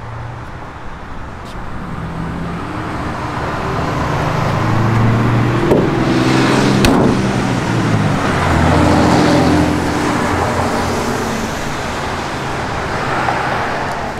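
A motor vehicle passing on the street, its engine swelling to a peak in the middle and fading away, with a couple of light knocks around halfway.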